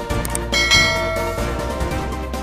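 Background music with a bright bell chime struck about half a second in, ringing and fading over about a second; a couple of short clicks come just before it.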